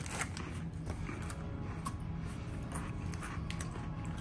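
Faint crinkling and handling of a chocolate-biscuit packet being opened, a few small scattered clicks, over a steady low hum.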